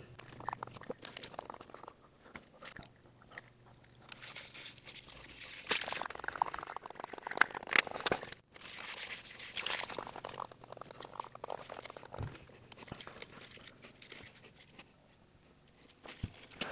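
Faint handling noises of a plastic cable raceway being fitted to the wall with heavy battery cable pressed into it: scattered clicks, scrapes and crinkling, coming and going unevenly.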